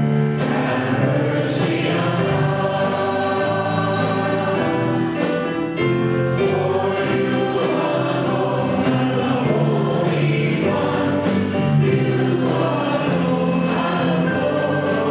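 Church choir singing a slow hymn in sustained notes, in a reverberant church.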